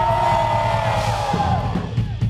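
A rock concert crowd cheering and screaming loudly in answer to the singer, over a held chord from the band's instruments. The chord bends down and drops out late on.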